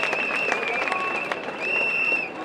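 A crowd clapping, a dense patter of many hands, with a high wavering tone running over it that breaks off briefly near the end.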